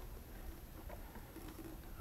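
Faint room tone: a low hum and a steady high-pitched whine, with a brief faint low tone about one and a half seconds in.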